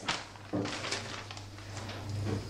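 A utensil working shredded chicken into thick mole sauce in a cast-iron skillet: a soft knock about half a second in, then faint scraping and handling noise over a low steady hum.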